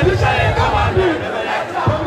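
A large crowd shouting and singing along at a live concert, many voices overlapping loudly, with irregular low thumps underneath.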